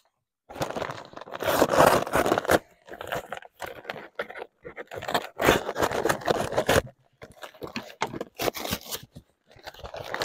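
A large bag of granulated sugar being cut open at the top and pulled apart by hand: irregular bursts of tearing and crinkling, with short pauses between them.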